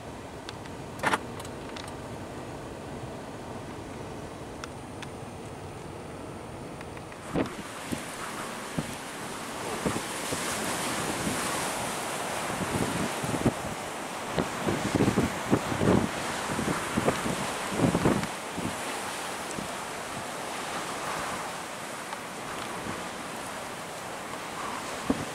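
A steady low car-cabin hum with a single click about a second in. From about seven seconds on, blustery wind gusts against the microphone in a string of low thumps, heaviest in the middle, over a steady rush of wind.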